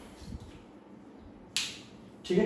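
A single short, sharp click about one and a half seconds in, over low room noise.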